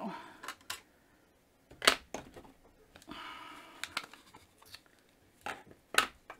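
Plastic stamp-pad cases handled on a tabletop: a few sharp clicks and knocks as ink pad lids are snapped open and the cases set down, the loudest click about two seconds in, with a brief scraping rustle a little after three seconds.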